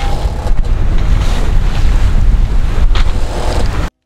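Wind buffeting the microphone on a sailboat under way at sea, a heavy rumble over the rush of waves; it cuts off suddenly near the end.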